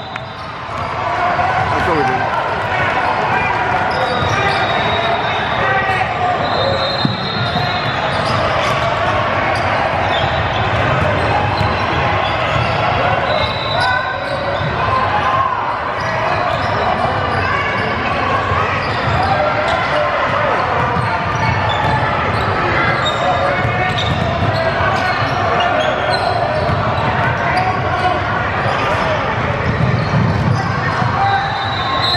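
Basketball game in a gym: a ball bouncing on the hardwood court, short high sneaker squeaks, and the continuous chatter of players and spectators, all echoing in the large hall.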